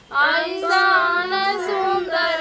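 Women singing a slow, melodic song with long held, wavering notes; the singing comes in just after the start following a short break.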